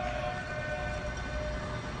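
Broadcast stadium ambience: a low rumble with faint steady tones over it and no commentary.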